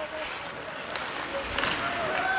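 Ice hockey arena sound: steady crowd murmur and skates on the ice, with distant shouting near the end and a sharp click about one and a half seconds in.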